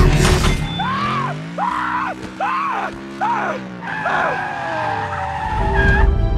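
Film sound effects of the car-robot Bumblebee transforming: a burst of loud metallic crashing, then five squealing sweeps, each rising and falling, about one every 0.8 s. Under them a sustained music drone climbs in steps.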